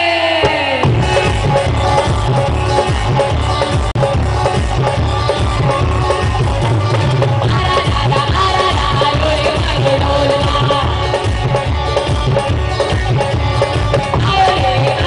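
A woman singing a song into a microphone, amplified through a PA, backed by a live band with keyboard and drums. A long held note ends about half a second in, then the band comes in with a strong steady beat.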